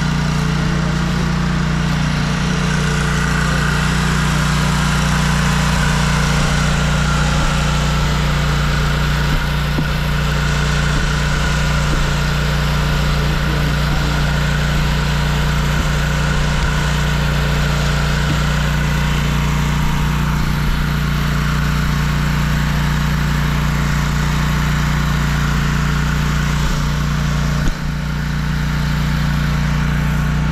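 Toro zero-turn mower running steadily with its blades engaged, mulching leaves: a constant engine hum under an even rushing of the cutting deck. There is one brief knock near the end.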